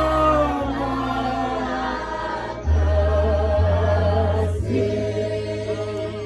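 Voices singing a slow hymn together in long, slightly wavering held notes, over sustained low bass notes that shift pitch a few times.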